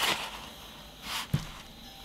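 Faint handling of a sheet of green card stock on a cork board: a soft paper rustle about a second in, followed by a light tap.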